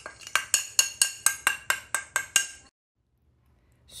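A small plate tapped rapidly against the rim of a stainless steel mixing bowl to knock spices off it, about six clinks a second, the bowl ringing after each tap. The tapping stops suddenly a little under three seconds in.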